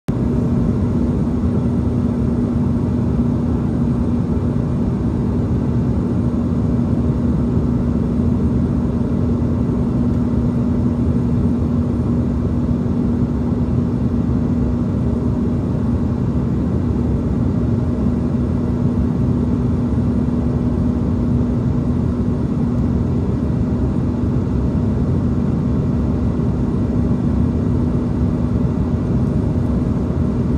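Steady in-flight cabin noise of an Embraer E170 jet, heard from a window seat over the wing: the drone of its GE CF34 turbofans and rushing air, with a constant low hum running through it.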